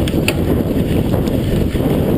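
Wind buffeting the microphone of a mountain bike riding fast over a bumpy grass-and-dirt trail, mixed with a steady rumble and rattle from the bike over rough ground. A couple of sharp clicks near the start.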